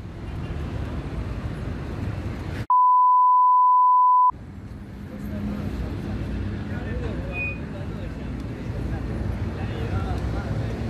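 A censor bleep: one steady, high, pure beep about a second and a half long, a little under three seconds in, replacing all other sound while it lasts. Around it runs steady outdoor background noise with faint voices.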